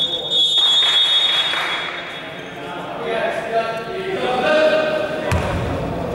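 A referee's whistle blown in one long, loud blast that fades out over about two seconds. Voices and a basketball bounce follow, echoing in the hall.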